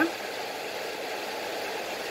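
Steady, even background noise of something running in the room, with no distinct knocks, clicks or tones.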